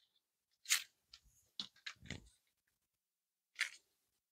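A few faint, brief rustles and crinkles of perforated paper strips being handled and wrapped around a bow-maker template: one a little under a second in, three close together around two seconds, and one near the end.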